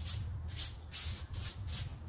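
Rake scraping across a concrete sidewalk, pulling loose dirt and grass clumps in quick repeated strokes, about two or three a second.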